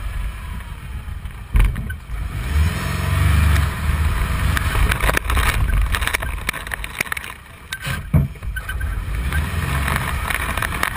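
A car driven hard across a bumpy grass field: its engine rising and falling with the throttle, sharp knocks and rattles as it bounces over the ground, and wind on the microphone.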